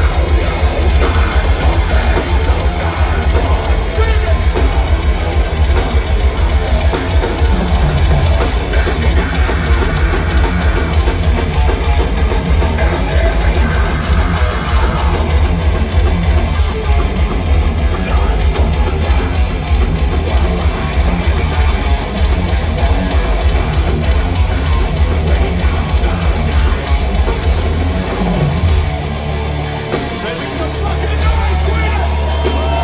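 Heavy metal band playing live at full concert volume: drum kit and distorted guitars, easing slightly near the end.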